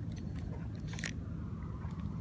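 Handling noise from a spinning reel and rod held close to the microphone: a few crackling clicks, the loudest about a second in, over a steady low rumble.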